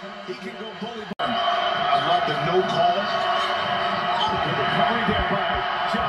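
Basketball game broadcast sound: a ball dribbled on the hardwood court, with a few sharp bounces near the end. A steady hum and muffled background voices run underneath, with a momentary dropout about a second in.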